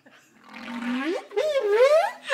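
A person's voice imitating a whale call: one long moan that starts about half a second in, low at first, then slides up and wavers in pitch, louder toward the end.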